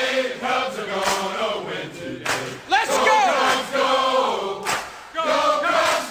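A group of voices singing or chanting together, with one voice briefly gliding up and down about three seconds in.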